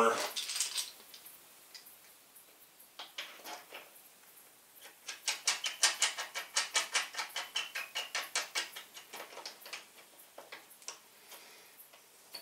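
A woodworking clamp being tightened on a cabinet panel: a run of quick, light clicks, about four or five a second, for several seconds in the middle, with a few scattered clicks before and after.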